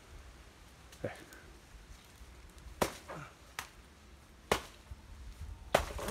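Machete chopping into the trunk of a banana plant: four sharp strikes about a second apart in the second half, just before the plant gives way.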